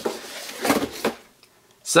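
A small cardboard box being slid out of its slot in a cardboard advent calendar: a scraping rustle of card on card with a couple of light knocks, stopping about a second and a half in.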